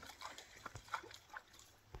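A bull caribou stepping through shoreline reeds and brush: faint, irregular clicks and rustles, with a sharper snap near the end.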